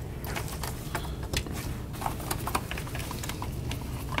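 Plastic bottom panel of an MSI GP73 Leopard 8RE laptop being pressed down by hand, its retaining clips snapping in with a run of small, irregular clicks and some rubbing of plastic.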